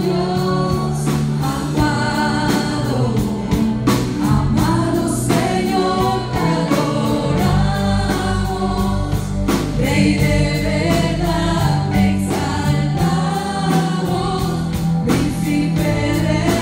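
Live Christian worship music: women singing a Spanish-language song into microphones over a band of electric guitar and drum kit, with a steady beat.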